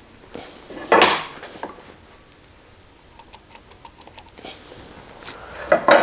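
A board and a square being handled on a table saw top during layout marking: one short, loud scrape about a second in, then a few light clicks and taps.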